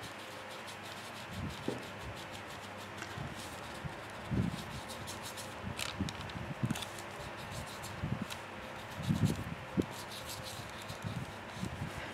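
Watercolour paintbrush strokes rubbing softly over paper, with a few soft knocks scattered through, over a faint steady hiss.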